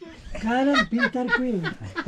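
People talking and laughing, the words indistinct.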